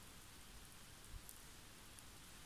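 Near silence: faint even background hiss with one soft low thump a little over a second in.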